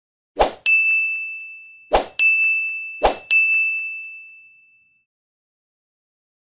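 Animated end-screen sound effects: three short noise bursts, each followed at once by a bright ringing ding that fades away. The last ding rings on for nearly two seconds.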